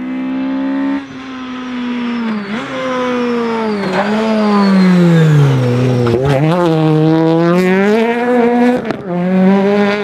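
Rally car engine at high revs: the pitch falls as the car slows for a bend, drops sharply at quick gear changes about six seconds in, then climbs again as it accelerates away. A high whine runs above the engine note.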